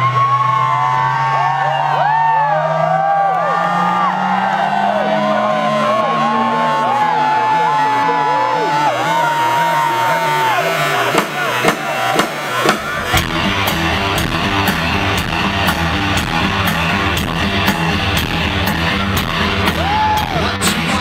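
Live rock band heard from the crowd: a low sustained tone rises slowly in pitch while the audience whoops and cheers. About thirteen seconds in, drums, bass and guitar come in with a steady beat.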